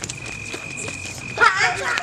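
Children playing a chasing game, with one loud, high-pitched child's shout with a wavering pitch about one and a half seconds in. A thin steady high tone runs underneath.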